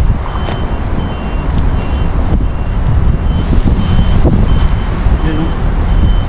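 A vehicle's reversing alarm beeping steadily, short high beeps about every two-thirds of a second, over a loud low rumble.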